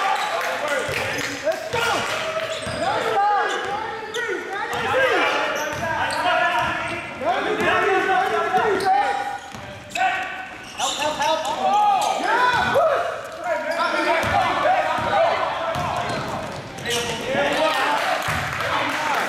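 Basketball game sounds in a large gym: a ball bouncing on the court under a steady mix of indistinct voices shouting and talking.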